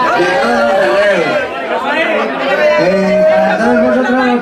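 Loud chatter: several people talking at once, their voices overlapping.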